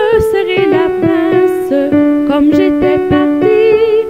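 A traditional French children's song sung to a keyboard accompaniment, the melody moving note by note in a steady rhythm.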